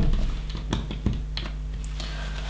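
Plastic LEGO bricks clicking as pieces are handled and pressed onto a build: a handful of separate sharp clicks.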